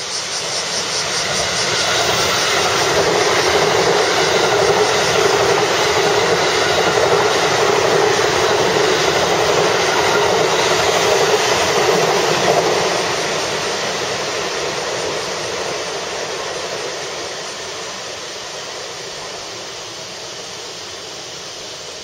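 JR electric multiple-unit train running past at speed: a steady rushing noise of wheels on rail that builds over the first two seconds, holds for about ten seconds, then drops away and fades as the train recedes.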